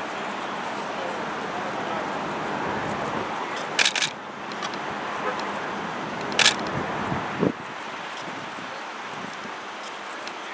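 Steady street and traffic noise, broken by sharp camera-shutter clicks: a quick pair about four seconds in and one more a couple of seconds later.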